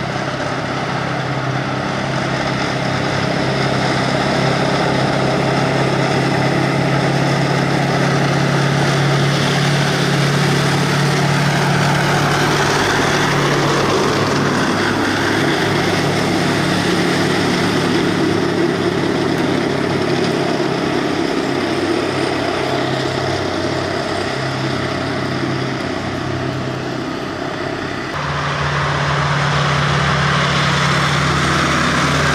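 British Army Warrior tracked infantry fighting vehicle on the move, its V8 diesel engine running steadily under a dense rattle from the tracks on tarmac. The engine note shifts about halfway through as the vehicle moves off, and the sound changes abruptly near the end.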